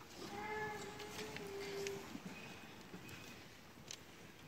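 Hushed concert-hall audience waiting for the band to start: a single held, steady pitched sound lasting about a second and a half near the start, then a few small clicks and rustles.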